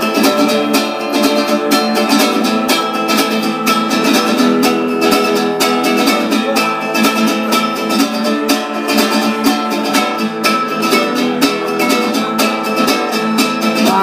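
Acoustic guitar strummed quickly and evenly, an instrumental intro with no singing.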